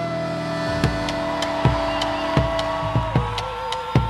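Folk band playing an instrumental passage of a chacarera: long held notes over low bombo legüero strikes about every three-quarters of a second.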